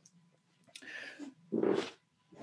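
A man's short, breathy throat noise about one and a half seconds in, after a quieter breath.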